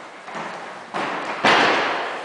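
Bodies hitting foam mats as aikido partners are thrown and take breakfalls: several thuds, the loudest about one and a half seconds in, each fading out slowly in the large gym hall.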